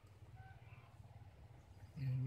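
Near silence: faint outdoor background with a low rumble and a few faint, short bird chirps about half a second in.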